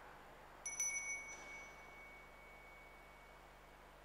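An altar bell is shaken briefly about half a second in, a few quick strikes, and then one clear tone rings on and fades away over about three seconds.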